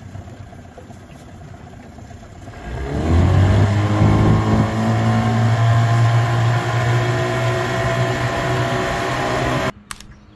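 Small outboard motor on an aluminium jon boat, quiet at first, then throttled up about three seconds in. Its pitch rises and it settles into a steady run under way. The sound cuts off abruptly just before the end.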